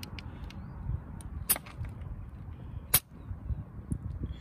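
Two short sharp clicks, about a second and a half apart, from handling a digital tyre pressure gauge and its brass air chuck at a car tyre valve while a reading is redone. A few fainter ticks and a low outdoor rumble lie under them.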